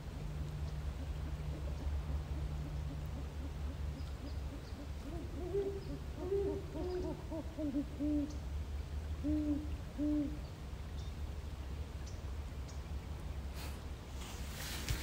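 Phone field recording of two owls hooting back and forth: runs of short, low hoots at two slightly different pitches, starting a few seconds in and ending about two-thirds of the way through, over a steady low hum of recording noise.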